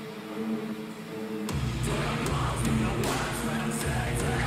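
Modern metalcore track playing: a held, sustained chord for about a second and a half, then bass and drums come in with the full band.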